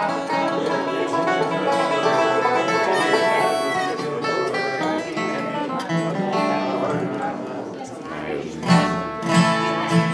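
Acoustic guitar and banjo picking bluegrass, with two loud guitar strums near the end.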